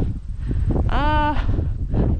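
Wind buffeting the microphone in a steady low rumble, with one short voice-like call that rises and falls about a second in.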